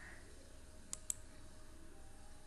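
Two quick computer mouse clicks, about a fifth of a second apart, about a second in, over faint room tone.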